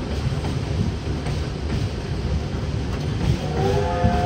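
Open-air amusement-park ride train running: a steady low rumble of wheels and drive, with a few faint clicks. A steady pitched tone comes in near the end.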